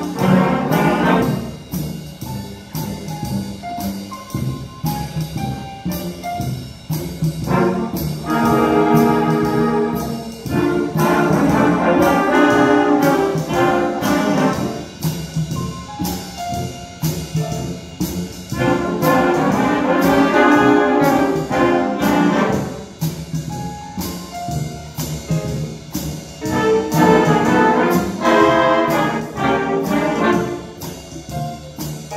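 Youth concert band playing: saxophones, trumpets and other brass over a steady beat of about two strokes a second, swelling several times into loud held chords.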